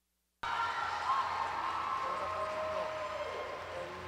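Audience cheering and clapping, with shouting voices, starting suddenly about half a second in after a brief silence and easing off slowly.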